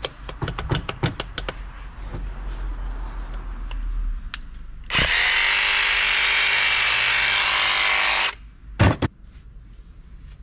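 Metal bits clinking and rattling in a plastic tool case. Then a Milwaukee M18 SDS-Max rotary hammer, fitted with a ground rod driver, runs steadily for about three seconds, starting about five seconds in and stopping sharply. A single thump follows.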